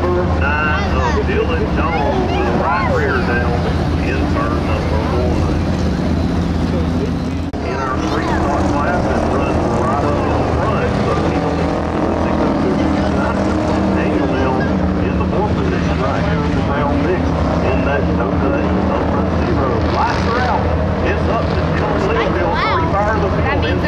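The V8 engines of a pack of Ford Crown Victoria race cars running steadily at low speed, with a few slight pitch changes as the cars circle slowly in single file.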